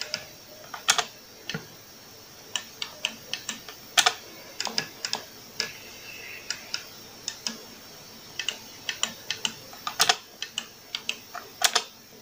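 Arcade joystick and push buttons in a homemade wooden controller box clicking as they are worked with one finger. The clicks are sharp and irregular, one to three a second, some in quick pairs, as the stick is nudged and the buttons are pressed to pick letters.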